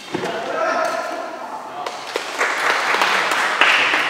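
Badminton play in an echoing hall: a sharp racket strike right at the start and a few lighter knocks later, with men's voices calling out.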